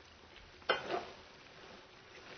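A single sharp knock of kitchenware, the pouring container or a utensil against the wok, about two-thirds of a second in, ringing briefly, otherwise quiet.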